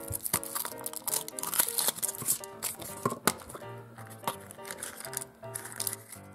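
Background music with a simple melody over the crinkling and tearing of a Kinder Surprise egg's thin foil wrapper being peeled off by hand.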